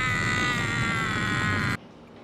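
A sustained, high-pitched note rich in overtones that drifts slightly down in pitch, then cuts off suddenly near the end. It is an edited-in comedic sound effect.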